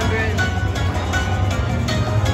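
Dragon Link Panda Magic slot machine playing its win-tally music, short chiming notes sounding while the win meter counts up a payout during free games. A steady low hum runs underneath.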